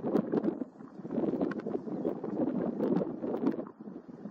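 Wind gusting against the microphone, an uneven rumbling rush that rises and falls, with a few faint clicks.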